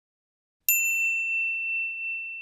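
A single high, clear ding, struck about two thirds of a second in and ringing out slowly: an intro sound effect for a channel logo.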